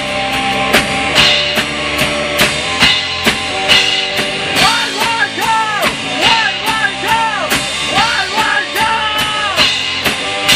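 Punk rock band recording with a steady drum kit beat under the full band. About halfway through, a lead melody of bending, sliding notes comes in and runs until near the end.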